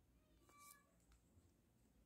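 Near silence, with one faint, brief pitched sound about half a second in.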